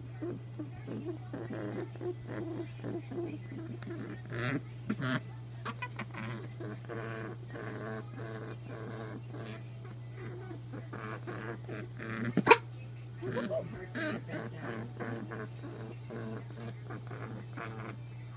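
Pet rabbit honking in repeated short pitched sounds while being stroked, a sign that it is excited and happy. A sharp click comes about two-thirds of the way through, and a person laughs and coughs near the end, over a steady low hum.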